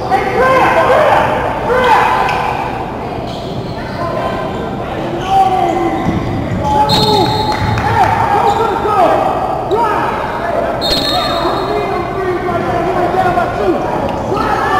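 Basketball bouncing on a hardwood gym floor during play, echoing in a large gymnasium.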